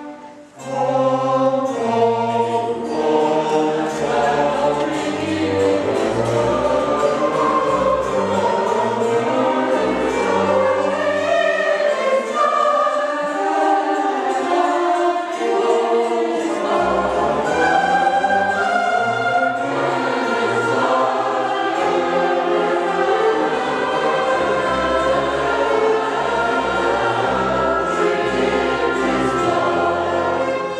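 Mixed choir singing with a string orchestra, the full ensemble coming in loudly about a second in after a quieter passage and carrying on steadily.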